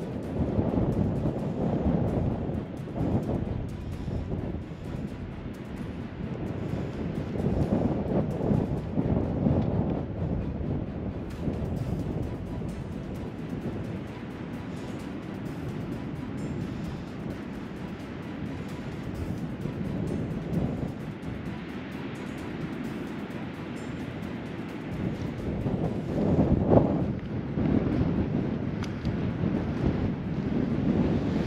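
Strong wind buffeting the microphone in uneven gusts, a low rumbling rush that swells and fades, with a stronger gust near the end.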